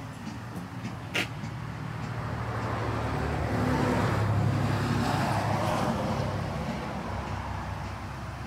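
A motor vehicle passing on the road: engine and tyre noise build to a peak around the middle and fade away. A short, sharp click about a second in.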